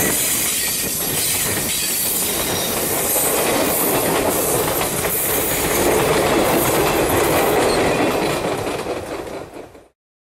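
Diesel-hauled passenger train passing close by: a trailing locomotive and then a passenger coach roll past, wheels running on the rails. The sound fades out in the last second or so.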